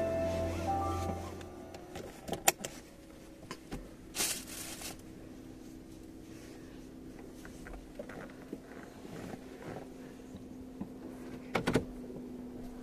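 Short music with piano-like notes fading out over the first two seconds, then a quiet parked-car cabin with a faint steady hum, a few sharp clicks and a brief rustle about four seconds in.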